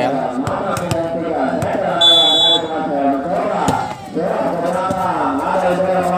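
Voices of players and spectators calling out across an outdoor volleyball court, with one short, steady blast of a referee's whistle about two seconds in, the signal for the serve.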